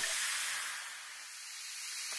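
Carbonated cola fizzing in a glass: a steady hiss of bursting bubbles that dips toward the middle and swells again near the end.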